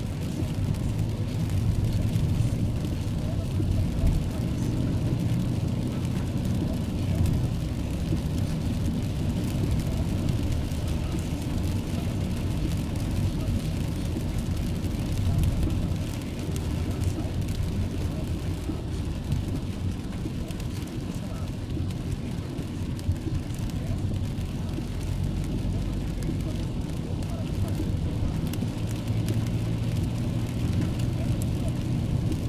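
Steady low rumble of a car's engine and tyres on a wet road, heard from inside the cabin while it creeps through traffic in the rain, with rain and the windscreen wiper on the glass.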